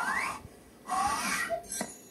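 Cartoon sound effects of a bubble-gum bubble being blown: a rising whistle-like tone as the bubble swells, a second rising whoosh about a second in, then a sharp pop near the end as the bubble bursts.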